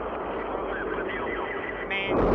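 Soyuz rocket's engines firing on the launch pad at ignition, a steady rushing noise as they build thrust just before liftoff, with faint voices behind it.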